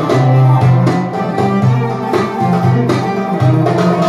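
Live Middle Eastern music for belly dance: qanun, violin and hand drum playing together, with plucked string notes over frequent drum strokes.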